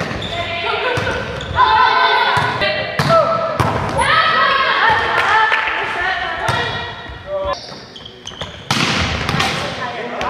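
Volleyballs being struck and bouncing on a sports hall floor, a sharp hit every second or so, with players' voices calling out over them.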